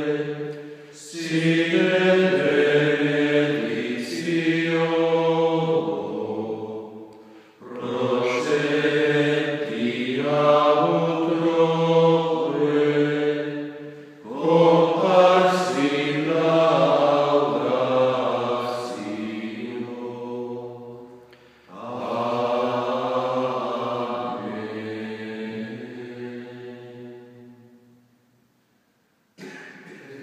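Male voices singing a slow liturgical chant during Benediction of the Blessed Sacrament, in four long phrases with short breaths between them.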